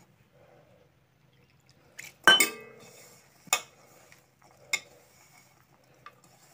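A hand mixing crumbly flour dough in a stainless steel bowl, the metal bowl clinking with a short ring about two seconds in, then knocking lightly twice more.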